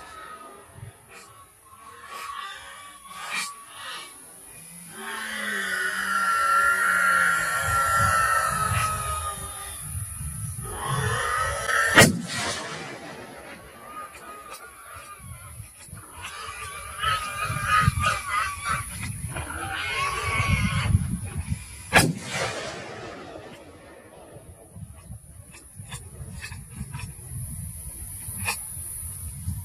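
Two sharp gunshots about ten seconds apart, at a running sounder of wild boar. Between them are long, drawn-out calls.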